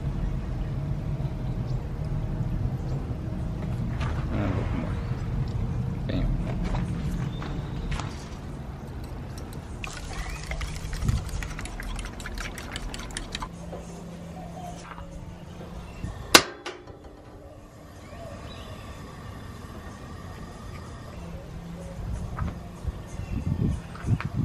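Milk poured from a plastic jug into a bowl of raw eggs, then a fork beating the eggs, its tines tapping the bowl in a quick run of clicks, and one sharp knock about sixteen seconds in, over quiet background music.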